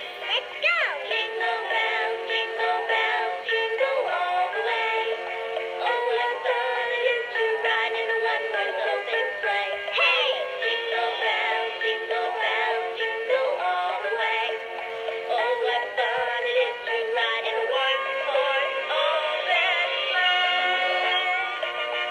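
Musical plush snowman Christmas decoration playing a sung Christmas song through its small built-in speaker. The sound is thin, with no bass.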